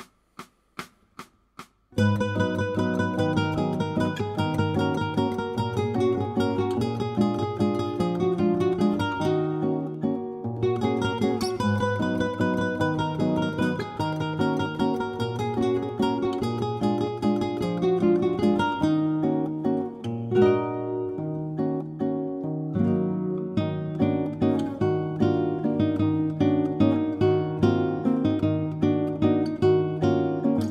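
Nylon-string Spanish guitar playing a waltz-rhythm chord accompaniment in E-flat minor, moving through barre chords such as Ebm7 and Abm7. It starts about two seconds in, after a few evenly spaced clicks.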